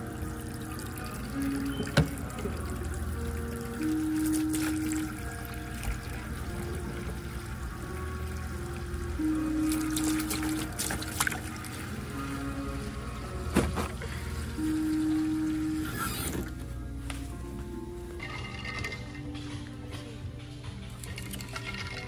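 Tap water running in a steady stream into a stainless steel sink, with background music playing over it. The water sound thins out after about sixteen seconds.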